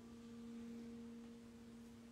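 Faint steady low tone with one higher overtone, slowly fading.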